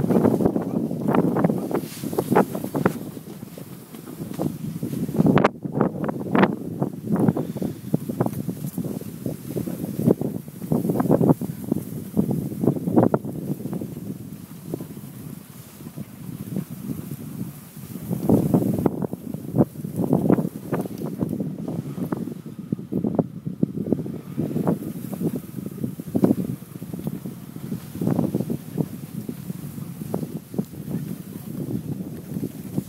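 Wind buffeting the microphone while a Nissan X-Trail drives slowly over a bumpy, overgrown dry-grass meadow, with irregular thumps from the rough ground. A sharp knock comes about five and a half seconds in.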